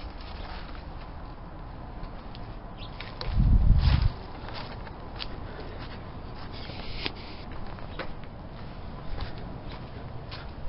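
Footsteps on concrete and grass with light handling clicks, over steady background noise. A loud low rumble comes a little over three seconds in and lasts under a second.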